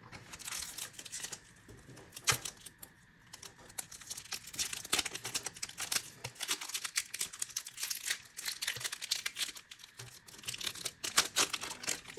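Foil trading-card booster packs being handled and opened: a dense, uneven run of sharp crinkles and crackles from the foil wrappers, with a few louder snaps.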